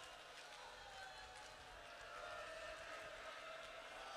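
Faint weeping and wailing of mourners: long, slowly wavering cries with no words.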